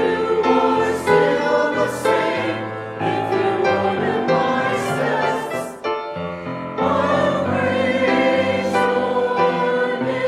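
Mixed church choir of men's and women's voices singing sustained chords, with a brief break between phrases about six seconds in.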